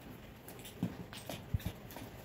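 A few light knocks and taps with scratchy rubbing as rubber shoe soles and a glue tube are handled and set down on a workbench, the knocks clustered in the second half.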